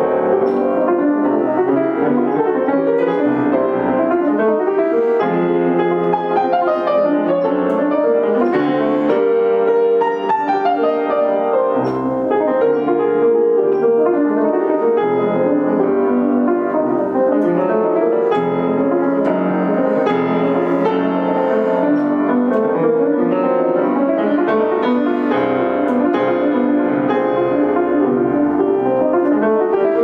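A 19th-century Érard grand piano played continuously, a steady stream of many changing notes. The instrument is a little out of tune.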